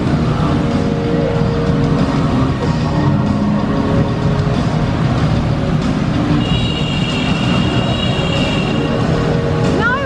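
Several motorcycles running together inside a steel-mesh globe of death, a loud, steady engine din, with music playing along with it.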